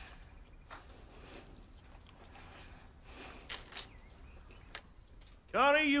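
A quiet stretch of room tone broken by a few faint, short clicks. Near the end a man's voice cuts in with a long, drawn-out word.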